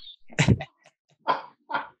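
A man laughing in three short bursts.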